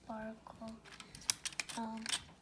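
A voice humming a few short, level notes without words. Near the middle there are a few sharp clicks from drawing markers and pencils being handled on the table.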